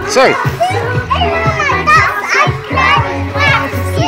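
Young children's high-pitched voices calling out and chattering as they play, over background music with a steady bass.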